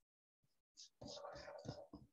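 Near silence, then about a second in a faint, brief stretch of whispered or very soft speech lasting under a second.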